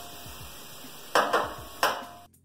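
Wooden spoon stirring chopped onion and leek in a stainless steel frying pan over a low sizzle, with three quick scraping strokes in the second half.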